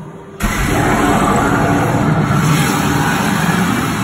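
A sudden loud, steady rushing blast from the animatronic Gringotts dragon's show effect. It starts about half a second in and holds for about four seconds.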